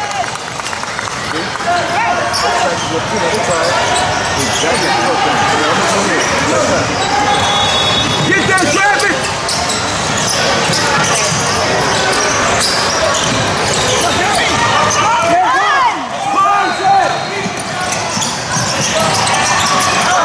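Youth basketball game in a large gym: a basketball being dribbled on the hardwood floor under steady, indistinct shouting and chatter from players and spectators, with a couple of brief high squeaks.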